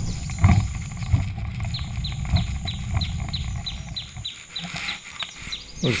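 A bird calling a rapid run of short, falling chirps, about four a second, from about a second and a half in until near the end. Under it, the low rumble and a few bumps of an electric wheelchair rolling along a footpath.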